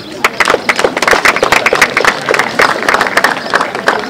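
Audience applauding: many hands clapping in a dense, uneven patter.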